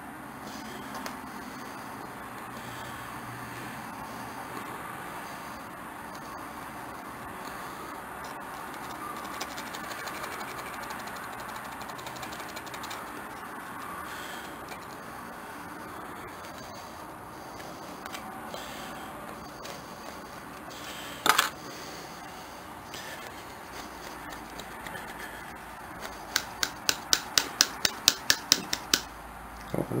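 Faint scratching of a bent wire picking rust from the pivot of old rusty pliers. A single sharp click comes about two-thirds through, and near the end there is a quick even run of about a dozen metal clicks, about five a second, as the pliers' jaws are worked open and shut. The rust-seized joint is loosening after a WD-40 soak.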